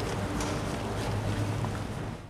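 Steady motorboat engine running with a low hum under a noisy waterfront background.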